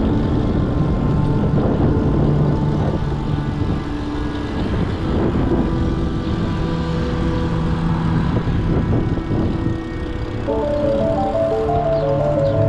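Steady rush of wind over an action camera's microphone and tyre noise from a bicycle rolling on tarmac, with background music underneath; the noise dips briefly near the end.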